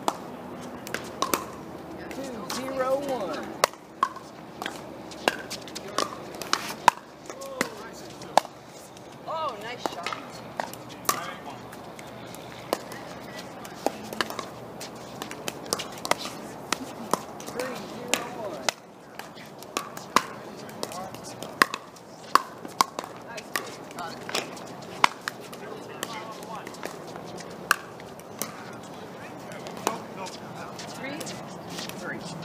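Pickleball paddles striking a plastic pickleball during rallies: a run of sharp pops at an irregular pace, some louder and nearer, others fainter.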